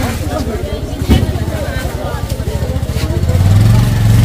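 A motorcycle engine running close by, its low even beat growing louder near the end, over the chatter of a market crowd. A sharp knock sounds about a second in.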